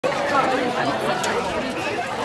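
Several people chattering at once, voices overlapping with no single voice standing out.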